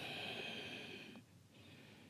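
A woman's soft breath out, lasting about a second and fading away, as she exhales into a standing side stretch; a fainter breath follows near the end.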